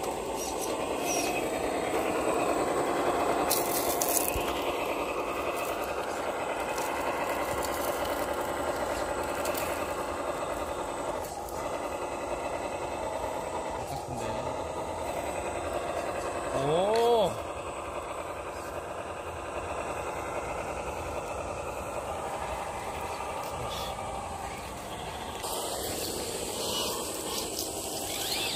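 Electric RC scale rock crawler's motor and gearbox whining as it crawls, the pitch wavering and swelling with the throttle, with tyres scraping and clicking over rock. A short rising-then-falling vocal exclamation breaks in just past halfway.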